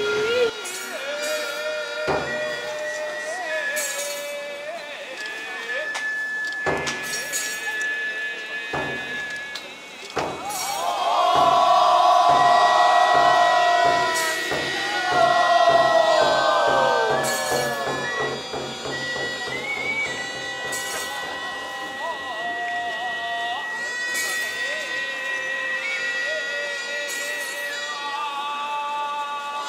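Traditional Japanese shrine music: wind instruments hold long tones that step and bend in pitch. Around the middle, a quick run of drum beats joins in under sliding, wavering pitches, and this is the loudest part.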